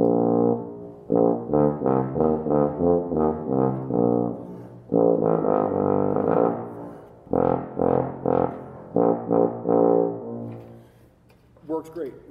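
Miraphone Hagen 497 tuba played with a foam-padded mute seated in the bell: a phrase of quick detached notes and a few longer held ones, with short breaks about four and a half and seven seconds in, stopping about ten seconds in. Played without a warm-up; the player finds the muted horn's response great.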